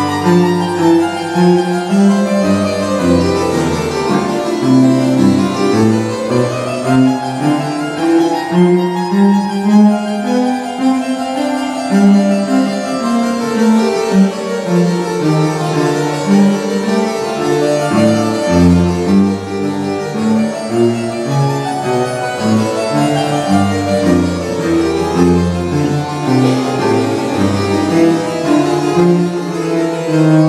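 Chamber string orchestra of violins and cellos playing a classical concerto movement, the notes moving continuously.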